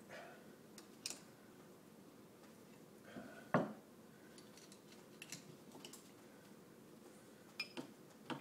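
Metal hand tools clinking and knocking as they are handled on the bench and against the lathe: a few scattered light clicks, with one louder knock about three and a half seconds in.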